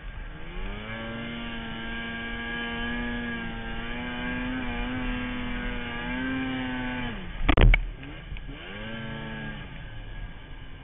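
Snowmobile engine held at steady high revs while climbing through deep powder. Its pitch drops off about seven seconds in, with a loud thump. Then there is one short rev that rises and falls.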